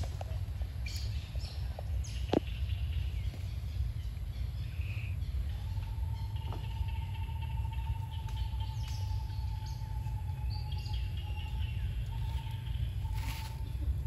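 Outdoor ambience: scattered bird chirps over a steady low rumble, with one sharp click a couple of seconds in. A steady high hum sets in about six seconds in and holds.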